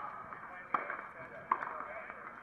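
Two sharp knocks of a tennis ball in play on a hard court, about three-quarters of a second apart.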